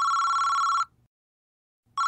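Electronic telephone ringing tone, a pair of close high tones sounding for just under a second. It is followed by about a second of silence, then the next ring starts near the end: the line ringing while a call waits to be answered.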